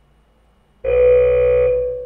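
Countdown timer alarm going off as it reaches zero, marking the end of the timed hold: one steady electronic beep starts just under a second in, lasts about a second and fades away.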